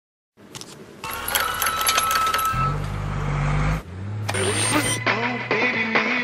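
A small portable radio being tuned across stations: crackle and clicks with a thin whine, a low hum that cuts off suddenly, then snatches of voice and music.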